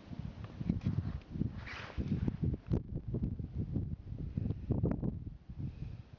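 Wind buffeting the camera microphone in uneven gusts, with a few small clicks and a short hiss about two seconds in.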